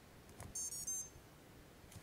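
A click as an XT60 battery connector is pushed home, then a quick run of high start-up beeps from the Afro 12 A ESC sounding through the brushless motor: the tones that show the ESC is now flashed with BLHeli firmware.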